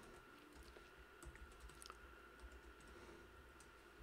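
Faint computer keyboard typing: a scattering of soft, irregular key clicks as a line of code is entered.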